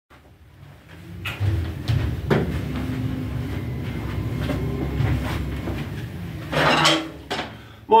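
Handling noise from someone moving about close to the recording device: scattered knocks and clatter over a low rumble.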